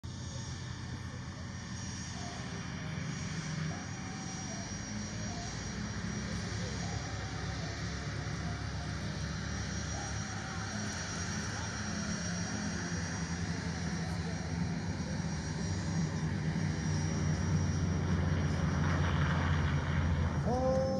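Piston engines of World War II propeller fighter aircraft droning on take-off, a steady low drone that grows louder through the run and is loudest near the end.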